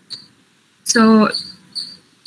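A woman's single drawn-out "so" about a second in, over faint, short high-pitched chirps that repeat roughly every half second.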